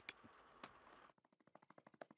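Near silence, with a faint rapid run of ticks in the second half.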